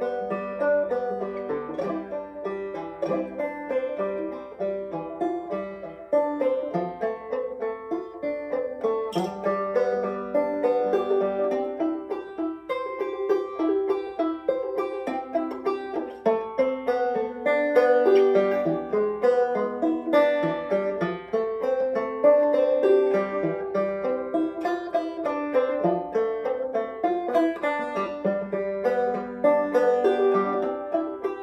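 Solo banjo being picked: a steady, unbroken run of quick plucked notes and chords.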